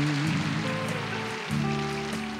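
Slow country ballad: a male singer ends a held note on the word "you" about a quarter second in, then the band's accompaniment holds a sustained chord, moving to a new chord about three-quarters of the way through.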